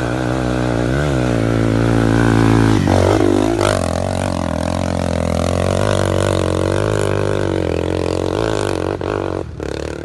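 Yamaha TT-R230 dirt bike's single-cylinder four-stroke engine pulling up a dirt-trail hill climb, revs rising and falling with the throttle. About three seconds in the pitch drops sharply and then climbs back.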